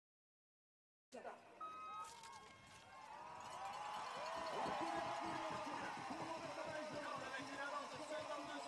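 Silence for about a second, then a short beep and a few sharp clacks. A growing crowd cheering and shouting follows as a field of cross-country skiers sets off from a mass start.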